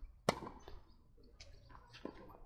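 Tennis racket striking a ball: one sharp hit about a quarter of a second in, followed by a few fainter taps.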